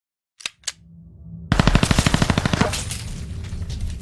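Logo-intro sound effects: two sharp clicks, then, about a second and a half in, a loud burst of rapid, evenly spaced strikes, about a dozen a second, like machine-gun fire. The burst fades into a low steady drone.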